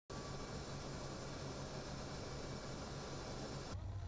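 Steady cabin noise of an aircraft in flight heard from the cockpit: an even hiss of engines and airflow over a low hum. It cuts off abruptly near the end.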